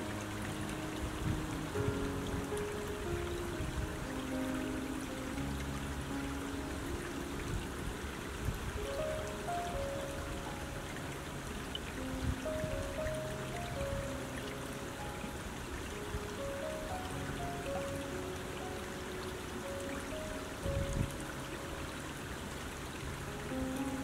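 Soft ambient music of slow, held notes over the steady sound of a shallow creek flowing over stones.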